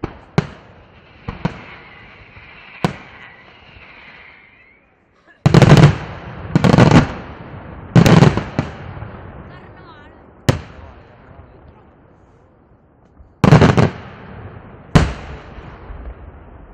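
Daytime aerial fireworks shells bursting overhead. First come a few sharp single bangs, then heavy bursts that each last under a second, in a cluster of three and again near the end, with single cracks between.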